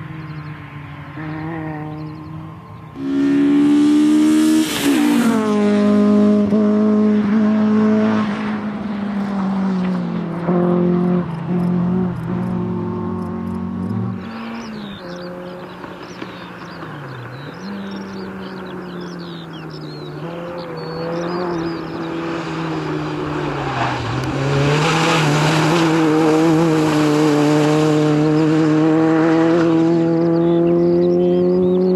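Peugeot 106 XSi engine driven hard around a tight course, revs climbing and dropping repeatedly through gear changes and lifts, loudest a few seconds in and again near the end. Tyres squeal through the turns in the middle.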